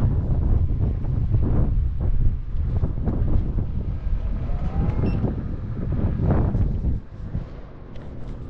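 Wind buffeting the microphone of a camera carried on a moving electric unicycle, a rough steady low rumble. It drops off markedly about seven seconds in.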